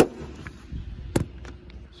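Two sharp knocks about a second apart, with a few fainter taps, over a low steady hum: handling noise as a car's hood is raised.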